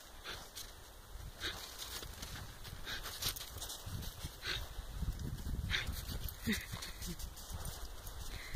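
Yorkshire terriers playing in snow: a dog gives one short vocal sound about six and a half seconds in. Around it there is scattered crunching and crackling of snow and a low rumble that builds through the second half.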